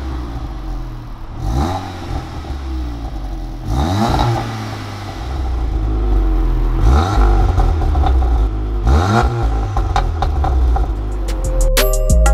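Volkswagen MK7 Golf R's turbocharged 2.0 four-cylinder idling, blipped four times, each rev rising and falling back to idle, heard at the exhaust tips. The car runs Stage 2 tuning with a catless downpipe.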